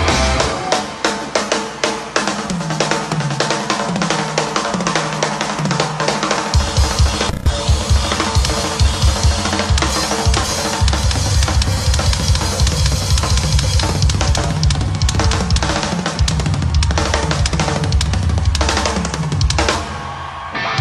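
Rock drum kit solo: fast, dense strokes across the toms and snare, with the snare wires switched off so the snare sounds tom-like. Rolls step down around the toms at first, and the bass drum comes in heavily about six and a half seconds in, with cymbals over the fills.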